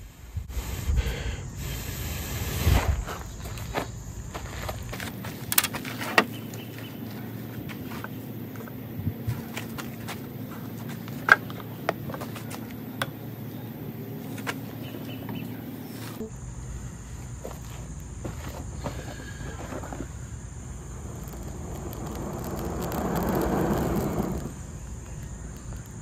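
Dry pine-needle tinder crackling and rustling in the hands as a glowing char-cloth ember is worked into it, then a long swell of blowing near the end as the bundle is brought up to flame.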